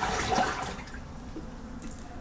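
Water sloshing in the wash tub of a portable twin-tub washer and spin-dryer at the end of its wash cycle, fading over the first second.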